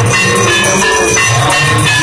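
Temple aarti: bells ringing together with drums beating in a steady rhythm.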